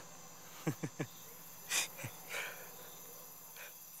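A man's short, breathy chuckle: a couple of quick voiced huffs about a second in and an exhaled breath near two seconds. Crickets chirr steadily and faintly behind it.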